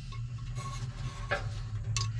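Two light metallic clicks of a screwdriver tip meeting the igniter set screw on a steel pellet-grill burn pot, one about a second in and one near the end, over a steady low hum.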